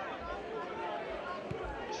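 Stadium ambience at a football match: faint, indistinct chatter of spectators and players, with a single short thump about one and a half seconds in.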